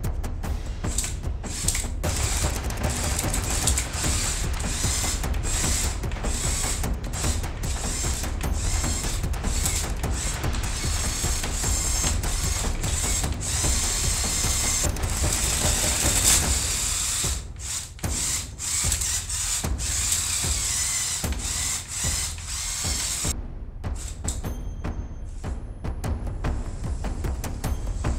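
LEGO Technic tracked transformation vehicle driving under remote control: its Powered Up motors whir while the gears and plastic tracks rattle as it turns, spins and flips over, with a couple of brief lulls.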